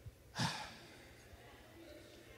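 A man's single sigh, a short breath out into a handheld microphone, starting suddenly about half a second in and fading quickly.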